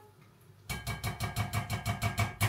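A rapid, even mechanical pulsing, about eight beats a second, starting suddenly under a second in.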